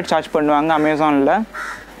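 A man's voice talking, with a short quieter stretch of faint noise near the end.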